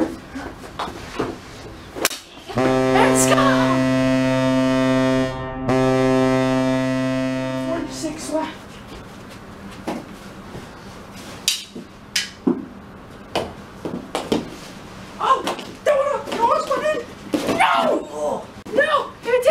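Recorded ice-hockey goal horn played back for a goal: one long, low, steady blast that starts a few seconds in and lasts about five seconds, with a brief break partway through. After it come scattered sharp knocks, and voices near the end.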